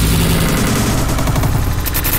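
Loud electronic outro sound effect: a rapid, rattling run of clicks over a low drone, like a stuttering machine-gun effect.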